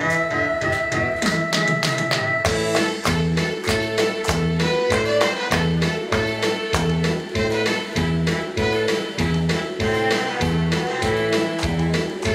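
Instrumental introduction of a Korean trot song playing from a backing track: a falling sweep and sharp percussion hits, then a steady bass-and-drum beat at about two beats a second that comes in a couple of seconds in.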